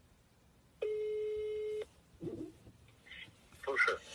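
Ringback tone from a phone on loudspeaker: a single steady ring lasting about a second while an outgoing call waits to be answered.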